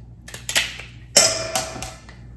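Kitchen shears cutting and cracking through a shellfish shell: a short crunching crack about half a second in, then a louder, longer crunch about a second in, so loud.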